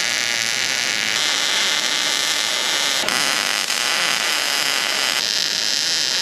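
Electric welding arc running one continuous bead: a steady crackling hiss, its texture shifting slightly a few times without a break.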